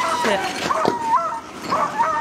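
High-pitched whimpering cries that glide up and down in pitch, with a sharp click about a second in.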